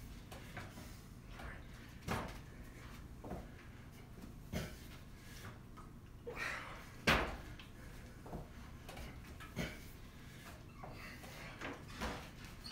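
Dull thuds and knocks on the floor from a man doing squat thrusts with curls of plastic water jugs, one every second or two. The loudest thud comes about seven seconds in.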